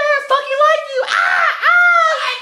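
A person screaming in a high, strained voice: one long drawn-out cry, a short break about a second in, then another cry that rises in pitch.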